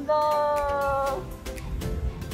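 A high voice holding one long note that falls slowly in pitch for about a second, then stops, over background music.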